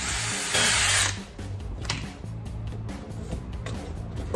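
DeWalt 20V cordless drill boring a small hole through a bushing in the end of a steering column tube, running for about a second and growing louder as it bites, then stopping. Background music runs throughout.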